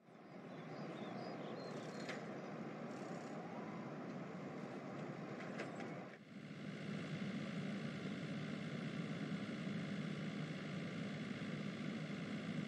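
Steady ambience of distant traffic with a few faint high chirps and clicks. About six seconds in it cuts to the steady low drone of a car's engine and road noise as heard inside the cabin.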